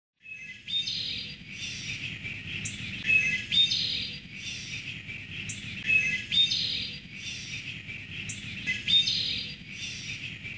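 Birdsong ambience: chirping bird calls in a pattern that repeats about every three seconds, over a low steady background.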